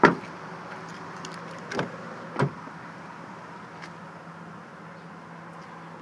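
A pickup truck's rear door shutting with one loud, solid slam, followed by two softer knocks about two seconds later, over a steady low hum.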